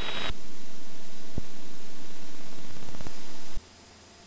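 Steady hiss of static on the aircraft radio and intercom audio feed, with a couple of faint clicks. It cuts off abruptly about three and a half seconds in, leaving only a faint low hum.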